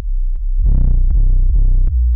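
Homemade analogue modular synthesizer built from Yusynth modules (VCO, VCF, ADSR, VCA), played from a keyboard. A low, steady bass tone, then from about half a second in a series of brighter, buzzy notes, about two to three a second, each with short gaps between.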